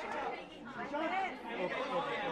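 Overlapping chatter of many people talking at once in a crowded press gathering, with no single voice standing out.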